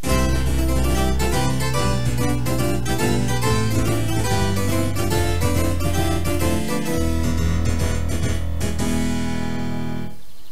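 Keyboard music: a busy line of quick notes over held low bass notes, breaking off at the very end.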